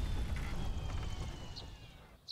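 Low rumbling sound effect from the animated soundtrack, dying away steadily, with a faint high whine sliding slowly downward.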